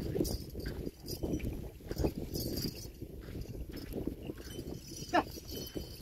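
A pair of bullocks drawing a cultivator through soft soil: plodding hooves and the implement scraping and rattling, with scattered knocks. A short pitched call, the farmer urging the bullocks on, comes near the end.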